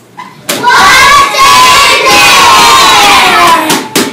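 A group of young children shouting and cheering together, loud, starting about half a second in and lasting about three seconds, the voices sliding down in pitch as it ends.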